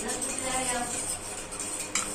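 A metal spoon stirring milk in a stainless steel tumbler, the spoon scraping and clinking against the steel sides.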